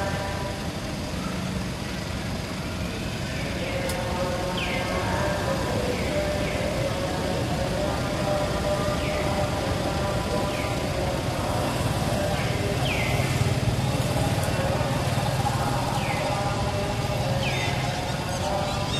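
Outdoor background noise: a low engine-like hum that swells a little in the middle, under a faint murmur, with a short falling chirp repeating every second or two.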